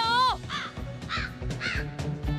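Comic crow-caw sound effect, three caws about half a second apart, over background music. It is the stock gag for an awkward silence when nobody answers.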